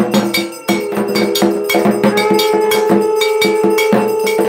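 Puja percussion: a metal bell or gong struck in a quick, even rhythm of about four strokes a second. About a second in, a long steady note starts and holds without a break, typical of a conch shell blown during the aarti.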